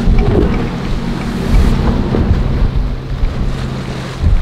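Outboard-powered center-console boat running at speed through choppy inlet water: a steady engine drone mixed with rushing water, under wind buffeting the microphone.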